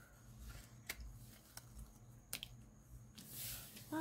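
Quiet room tone with a low hum, broken by a few faint light clicks of hands and paper on a tabletop, and a soft rustle near the end.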